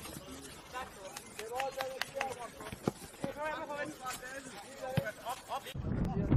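Players' voices shouting and calling out across an open football pitch in short, separate cries, with scattered sharp knocks in between. A louder low rumbling noise starts just before the end.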